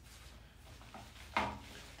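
Quiet room tone in a small studio, with a brief pitched vocal sound from the man about one and a half seconds in.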